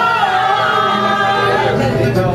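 Singing voices with a woman's voice leading, over a strummed acoustic guitar, several voices together holding long notes.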